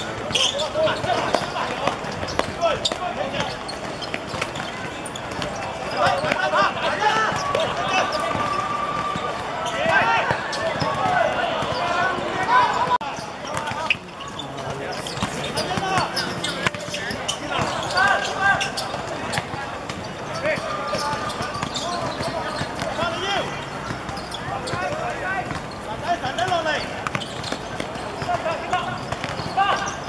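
Football players shouting and calling to each other during play, with the ball being kicked and bouncing on the pitch from time to time.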